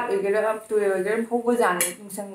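A woman talking, with metal cutlery clinking against a ceramic plate; a short bright clink comes near the end.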